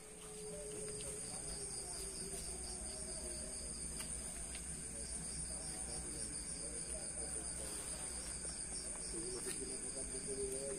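Night insects, crickets, trilling steadily: one continuous high-pitched trill with a second, pulsing trill just below it.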